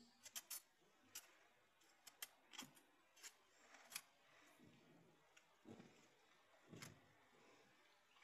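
Faint, irregular small clicks and taps of a hand handling a thin specimen strip and the metal jaws of a Schopper-type folding endurance tester, about a dozen scattered over near-silent room tone.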